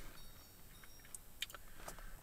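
Quiet room tone with a few faint, short clicks in the second half, like small handling or tapping sounds.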